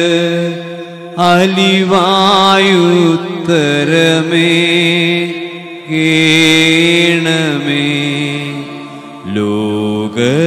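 A voice chanting a Malayalam liturgical melody of the Holy Qurbana over held keyboard chords, in phrases with short breaths about a second in, just before six seconds and near nine seconds.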